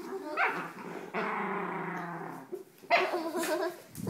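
Miniature schnauzer growling in rough play, with one long growl lasting about a second and a half, followed by shorter higher vocal sounds. It is a play growl, not aggression.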